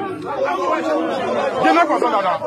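Crowd chatter: many voices talking over one another at once, none clear enough to follow.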